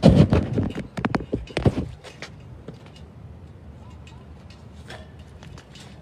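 Arms of a martial-arts training dummy struck by the forearms and hands: a quick run of about seven or eight hard knocks in the first two seconds, then only a few faint taps.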